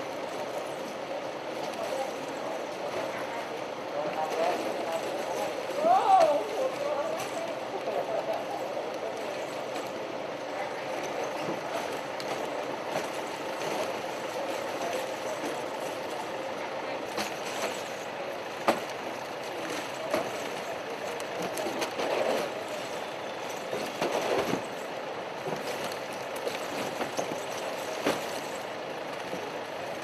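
Indistinct chatter of a group of people working, with scattered sharp knocks and clicks as shrink-wrapped packs of plastic water bottles are handled in and out of a pickup truck's bed. The sharpest click comes a little under two-thirds of the way in.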